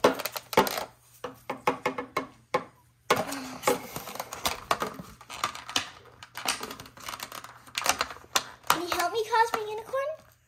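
Clear plastic toy packaging being handled and pried apart on a tabletop: a run of quick, irregular plastic clicks, crackles and rattles.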